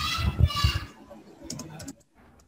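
Computer keyboard typing: a quick run of keystrokes about one and a half seconds in, while a formula is entered in Excel. A brief, louder voice sound fills the first second.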